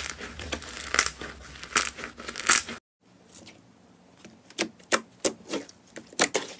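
A hand squeezes and crushes crumbly, foam-textured slime, making a crackling crunch with louder crunches about once a second. After a sudden cut, fingers pressing glossy clear jelly slime make quieter sticky clicks and pops.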